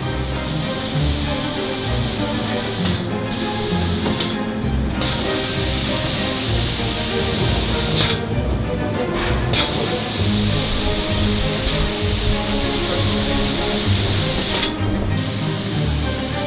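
Background music under a loud, steady hiss. The hiss cuts out and comes back several times, once for about a second.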